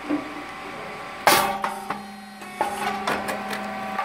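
Rice cake popping machine cycling: a sharp pop about a second in as the heated mold opens and the rice cake puffs, followed by metallic ringing and a steady hum, then a couple of lighter mechanical clunks.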